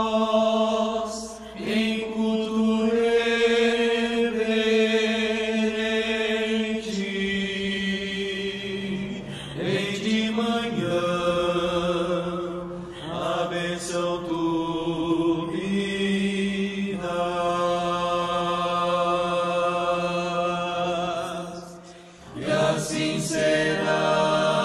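Men's a cappella choir singing a slow hymn in close harmony, holding long chords with short breaks between phrases and a brief pause near the end before the next phrase.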